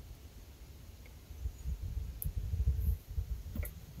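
Male and female spade-terminal connectors on a light's wires being pushed together by hand: a few faint clicks over a low rumble of handling noise from about a second and a half in.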